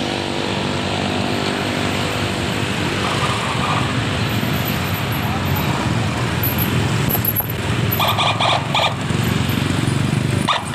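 Many motorcycle engines running together as a slow convoy of motorbikes rides past, with voices mixed in. A brief burst of rapid pulsing sounds rises above them about eight seconds in.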